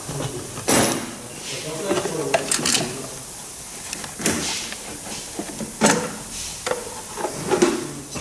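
Short, irregular scraping and clattering noises of hand work in a car's engine bay, about half a dozen of them, as parts and tools are handled and moved.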